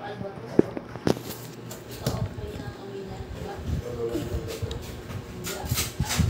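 Voice-like sounds and music playing from a video through small desktop computer speakers, with a few sharp clicks, one about a second in and several near the end.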